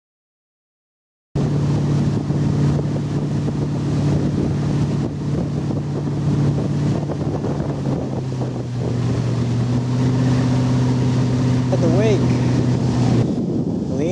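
Motorboat engine running steadily while towing a water skier, heard from on board with wind buffeting the microphone; the engine note drops slightly about eight seconds in. It starts abruptly after about a second of silence, and a short call from a voice comes near the end.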